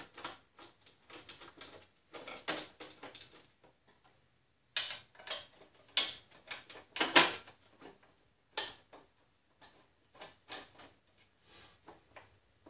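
Irregular metallic clicks and light knocks of a fender bolt being fitted by hand through wire clamps against a sheet-steel fender and bracket, with a brief lull about four seconds in and the sharpest knocks soon after.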